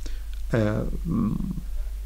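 A man's brief hesitant voiced 'aah' about half a second in, followed by a low murmur, over a steady low hum.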